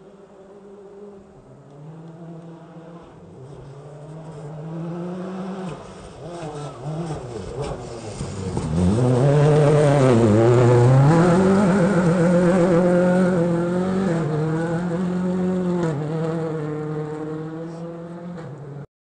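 Rally car engine coming closer and growing louder. Its pitch drops a few times as it brakes and shifts down for a hairpin at about eight to ten seconds. It then revs hard out of the corner and fades as it goes away.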